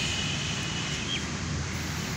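Steady outdoor background rumble with a broad noisy hiss over it, and a thin high steady tone that drops away and stops about a second in.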